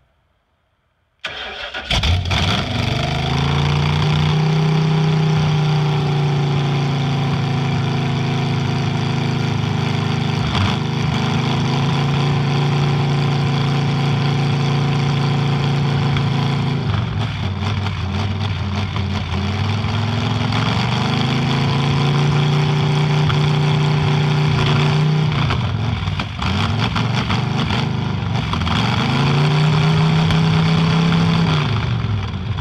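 Ford 460 big-block V8 in an old truck, breathing through open headers, cranks briefly and catches about two seconds in. It then runs loud and rough, its revs sagging and picking up again several times as the throttle is worked by hand at the carburettor.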